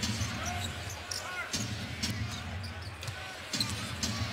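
Basketball being dribbled on a hardwood court, repeated sharp bounces over steady arena crowd noise.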